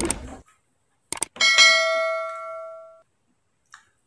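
Subscribe-button sound effect: two quick mouse clicks about a second in, followed by a single bell ding that rings out and fades over about a second and a half.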